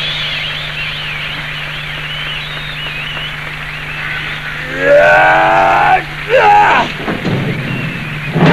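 A voice cries out loudly twice, a long bending cry about five seconds in and a shorter one about a second later, over a low steady hum and faint wavering high tones.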